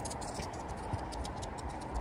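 Steady hiss of rain with irregular light ticks of raindrops landing close to the microphone.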